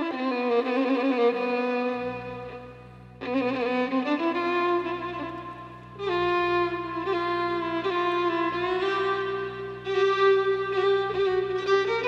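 Solo violin playing a slow melody in long, sustained phrases, with a steady low held note from the orchestra entering underneath about two seconds in.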